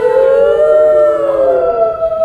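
A group of people howling together in chorus, several long drawn-out howls at different pitches overlapping as voices join in one after another.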